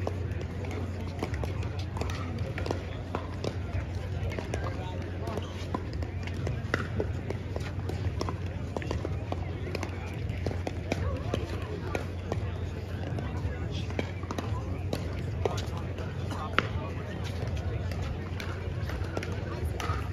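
Indistinct chatter of people talking around an outdoor court, over a steady low hum, with scattered short clicks.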